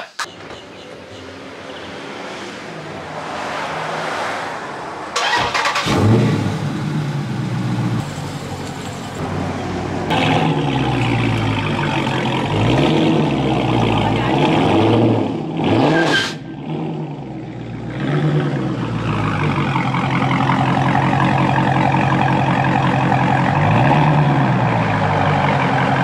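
Dodge Charger Scat Pack's 392 (6.4-litre) HEMI V8 starting about five seconds in, then idling, with several short revs that rise and fall in pitch midway and once more near the end.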